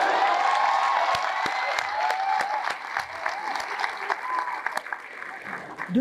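Audience applauding, loudest at the start and slowly dying away, with voices calling out over the clapping in the first half.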